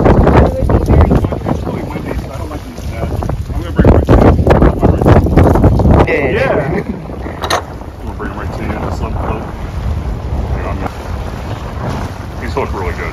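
Wind buffeting the microphone in heavy low gusts, strongest at the start and again from about four to six seconds in, then easing.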